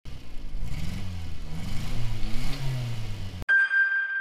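Subaru Sambar kei truck's rear-mounted engine revving up and down several times. About three and a half seconds in it cuts off abruptly, and a sharp chime-like ringing tone follows and fades.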